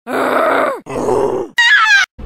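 A voice making two drawn-out groans that fall in pitch, then a short, high, wavering squeal near the end.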